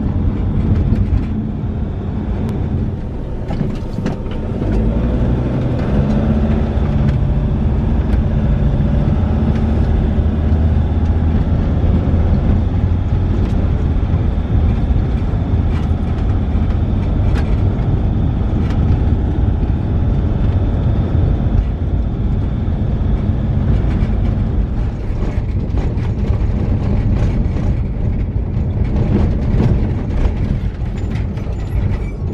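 A vehicle driving at road speed: steady engine and road noise, heaviest in the low end, with no breaks.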